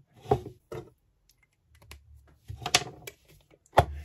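Handling noises: a few scattered light taps and knocks as a marker pen and a thick battery cable are set down and moved on a plywood work board, with a sharper tap near the end.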